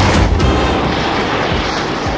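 Wind buffeting the camera microphone and a snowboard sliding over packed snow: a loud, steady, rumbling rush that eases off slightly.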